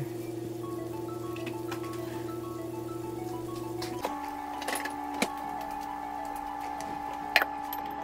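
Soft background music of chime-like notes over held tones that shift about halfway through. A few light knocks come through it, as a wooden spatula is set down and a glass lid is put on the wok, the sharpest near the end.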